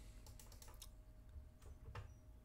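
Near silence with faint computer clicks: a quick run of clicks in the first second, then two more near the end, over a faint steady hum.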